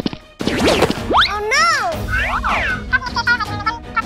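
Cartoon comedy sound effects: a short swish, then a quick rising glide and a boing with rising and falling pitch. Light background music takes over in the second half.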